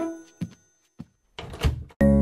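Children's song music dying away, then two faint taps and a dull thunk near the end: cartoon sound effects.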